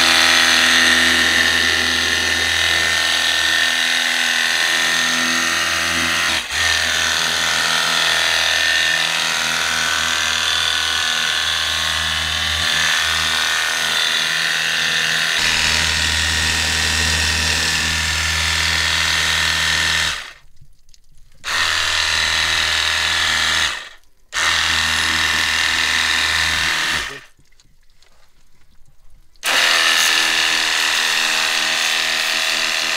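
A VEVOR cordless, battery-powered power washer's pump runs steadily, its water jet hissing against the tractor's metal. The pump stops briefly three times near the end, then restarts.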